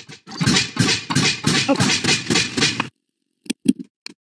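Dense, noisy computer-played video audio with a rapid ripple, cutting off suddenly just under three seconds in, followed by a few short clicks.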